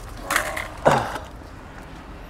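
Rusty piece of a metal ammo crate scraping and clattering as it is picked up from the ground: two short scrapes, the second louder, about a second in.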